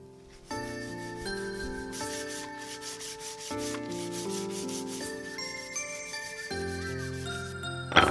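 A blade shaving a wooden stick in quick, rhythmic scraping strokes, about four a second, over background music.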